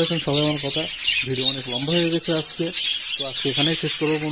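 A colony of budgerigars chattering and chirping continuously, many high, short calls overlapping, with a man's voice talking over them.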